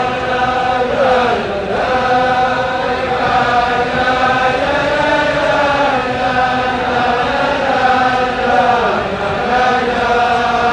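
A crowd of men singing a slow, chant-like melody together in unison, with long held notes that glide slowly from one pitch to the next.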